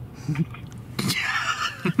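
A man's voice: a short low murmur, then about a second in a breathy, whisper-like exhale, with normal speech starting near the end.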